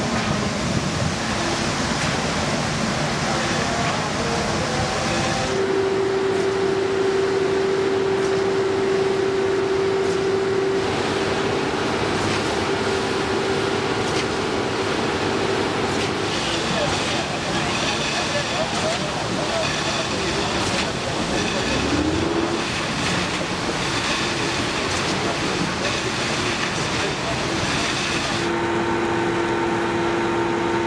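Construction-site heavy machinery running, heard as a string of short takes that change abruptly every few seconds. A steady engine hum runs for several seconds, a machine's pitch rises briefly about two-thirds of the way through, and near the end a concrete mixer truck and concrete pump drone steadily.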